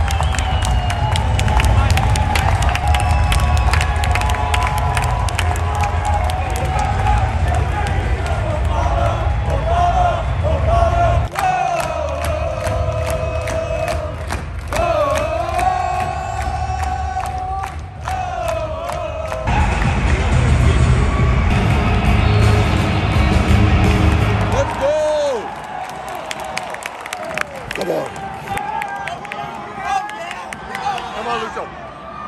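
Music with a singing voice over a stadium sound system, above a crowd, with a heavy low rumble underneath. About 25 seconds in, the rumble drops away, leaving crowd noise and scattered shouts as play kicks off.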